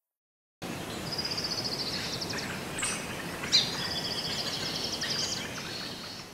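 Outdoor ambience: a songbird singing rapid trilled phrases over a steady background noise. It starts suddenly about half a second in and begins to fade near the end, with one sharp click a little past the middle as the loudest moment.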